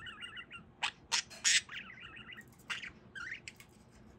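Budgerigar chattering in quick warbling runs, broken by a few short, sharp bursts around one to one and a half seconds in and again near three seconds.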